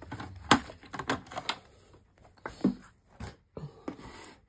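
Sheets of patterned scrapbook paper being handled and laid down on a wooden tabletop: a few sharp taps and knocks with light paper rustle between them, the loudest tap about half a second in.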